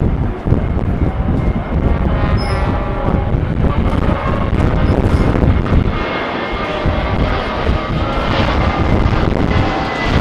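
Marching band playing the national anthem, heard at a distance and partly covered by steady wind rumble on the microphone.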